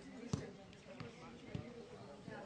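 Football being played on grass: three dull thuds of boot on ball about half a second apart, the first the loudest.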